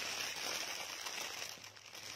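Clear plastic packaging bag crinkling as the bagged padded bras inside are handled, a continuous rustle that dies down near the end.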